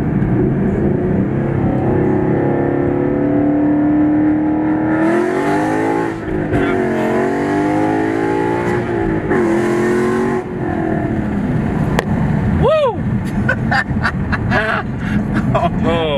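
Ford Mustang engine under hard acceleration with a manual gearbox, heard from inside the cabin: the engine note climbs, drops at a gear change about six seconds in, climbs again and drops at a second shift about ten seconds in.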